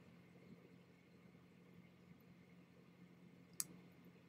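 Near silence with a faint steady low hum, broken by a single sharp computer mouse click a little past three and a half seconds in.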